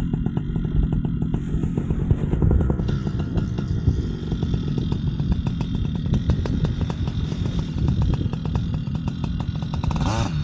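Paramotor's small two-stroke engine running steadily during the wing launch, a rapid even pulse over a deep rumble, with a brief change in pitch at the very end.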